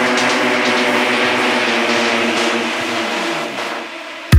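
Breakdown of an electronic dance track: a held synth chord over a wash of noise, with no kick drum or bass. Late on, a synth sweep falls in pitch and the music drops in level.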